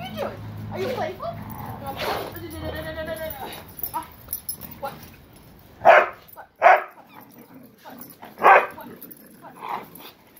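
A dog barking: three loud, short barks from about six seconds in, with a softer one near the end and higher pitched vocal sounds in the first few seconds.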